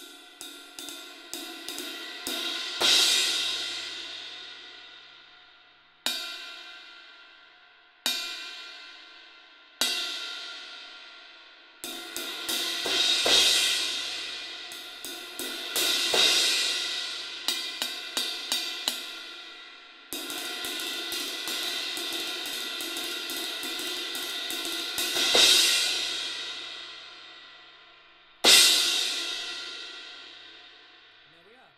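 Sabian HHX Xtreme 19-inch crash cymbal played with wooden drumsticks. Quickening taps build into a full crash, then single crashes are each left to ring and die away. A steady roll swells into another crash, and a final loud crash rings out near the end.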